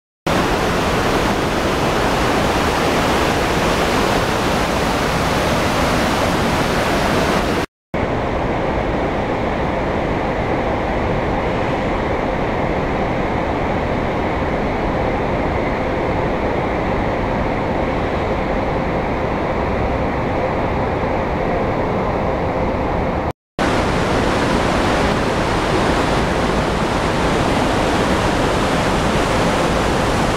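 Steady, loud rush of a rocky mountain stream in white-water flow. It drops out briefly twice, and the middle stretch sounds duller, with less hiss.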